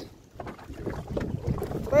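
Wind buffeting the microphone over the water noise of a small fishing boat, with scattered light knocks and rustling from a rod and reel being worked as a hooked fish is reeled in. A short shout comes right at the end.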